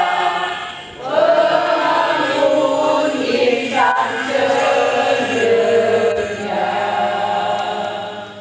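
A choir singing in unison in long held notes, with a short breath between phrases about a second in; the song begins to die away at the very end.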